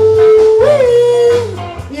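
Live band playing, with one long held note that bends up and back down about halfway through, over bass and drums.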